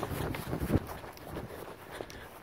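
Footsteps of a person running over grass, with wind rushing on the microphone; the steps ease off about a second in.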